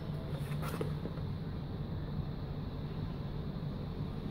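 Steady low background hum, with a few faint rustles of a box being handled in the first second.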